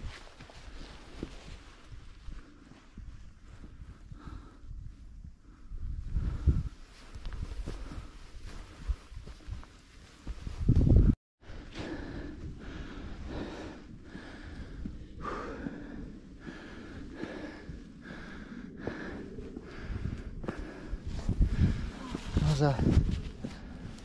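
Wind gusting across the microphone in low, uneven rumbles, with footsteps and hard breathing on a steep hill climb.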